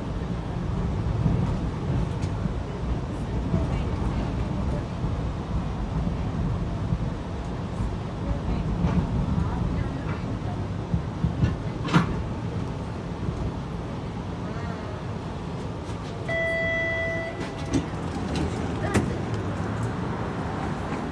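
TTC streetcar running on its rails, heard from inside the car as a steady low rumble. There is a sharp click about twelve seconds in, a short electronic tone lasting about a second near the end, and then a few knocks.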